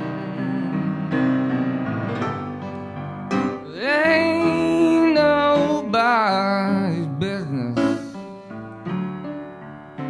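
Upright piano playing a slow blues. About three and a half seconds in, a loud lead melody joins it, sliding and bending in pitch, and fades out near eight seconds.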